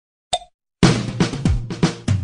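Opening of an Egyptian mahraganat (electro-shaabi) song: a brief tone, then a loud, drum-heavy beat with deep bass starting a little under a second in.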